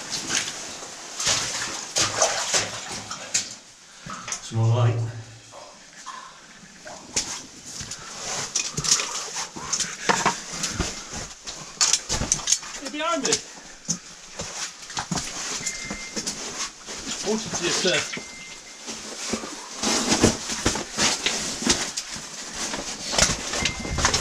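Irregular knocks and scrapes of cavers' boots and gear moving over rock in a mine passage, with a few brief voices.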